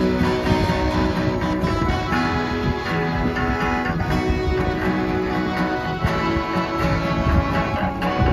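Live street band playing an instrumental passage on accordion and guitars, with steady held accordion chords under strummed guitar.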